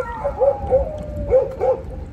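A dog whining in one long, slowly falling whine, broken by four short yelps.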